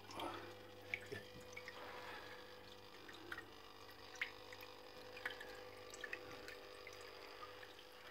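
Small tabletop water fountain trickling faintly, with scattered soft drips over a steady low hum.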